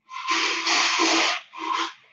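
Ice being scooped from a bar ice bin: a loud rattling scrape of ice lasting about a second and a half, then a second short scoop. Heard over a video-call connection.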